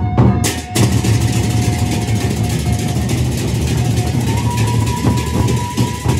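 Gendang beleq ensemble playing: large Sasak barrel drums beaten in a steady pattern, with clashing hand cymbals filling the sound from about half a second in. A held melody note rises to a higher pitch around four seconds in.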